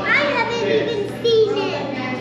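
Children's voices talking and chattering, no words clear.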